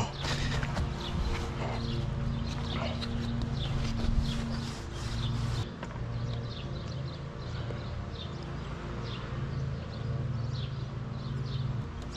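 Motor oil glugging as it is poured from a plastic jug into an engine's oil filler neck, with a low, uneven, pulsing burble that goes on throughout.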